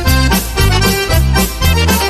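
Instrumental polka music with accordion over a bouncing bass-and-chord beat, about two beats a second.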